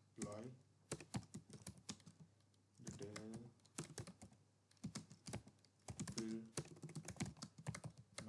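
Faint typing on a computer keyboard: an irregular run of key clicks as a line of text is typed.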